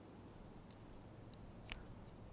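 Fingernail picking at a damp paper sticker on a plastic bottle: a few faint, crisp clicks in the second half, the last one the loudest, over quiet room tone.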